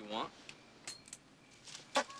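A few light, sharp metallic clinks of small metal objects, spread out over about a second and a half.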